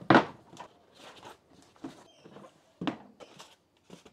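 A cardboard product box being opened and its foam insert lifted out by hand: a thunk right at the start, soft scattered handling sounds, and another knock near three seconds in.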